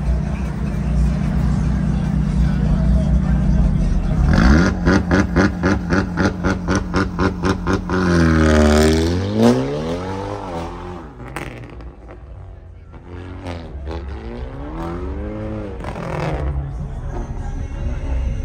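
Hyundai Elantra N's turbocharged 2.0-litre four-cylinder idling, then revved about four seconds in and held high in a rapid stutter of about four pulses a second. About eight seconds in it launches and accelerates, its pitch falling and rising through gear changes and fading as the car pulls away.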